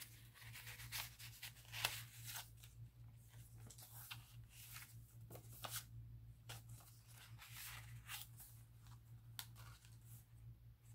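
Faint rustling and light ticks of paper and card being handled: tucked cards slid out of pockets and pages of a handmade paper journal turned, in irregular short bursts over a steady low hum.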